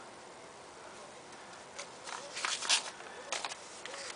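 Manila paper envelope being picked up and handled, after a quiet first two seconds: a few short crinkling, rustling bursts of stiff paper.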